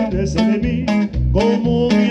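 A live norteño band playing: strummed and plucked guitars and a steady bass-and-drum beat under held melodic notes.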